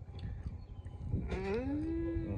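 A cow mooing: one long call that starts a little over a second in, rises in pitch and then holds steady.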